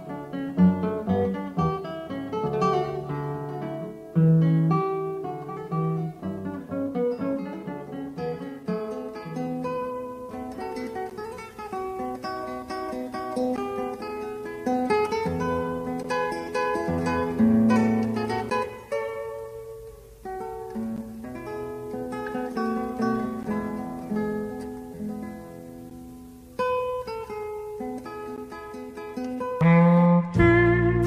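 Background music played on acoustic guitar, a continuous run of plucked notes and chords.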